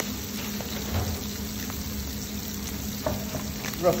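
Tandoori-dusted mackerel fillets frying skin side down in a pan over medium-hot heat, a steady sizzle under a steady low hum. A couple of knife knocks on a wooden chopping board near the end.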